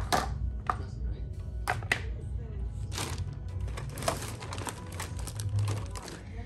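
Thin plastic carrier bag rustling and crinkling in irregular bursts as things are rummaged out of it, over background music.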